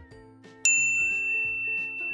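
A single bright chime-like ding, struck about two-thirds of a second in and ringing on while slowly fading, over faint held background music notes.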